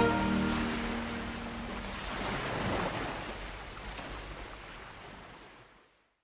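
Surf washing onto a sandy beach, swelling about two to three seconds in and then fading out to silence near the end. The last held notes of the music die away under it in the first two seconds.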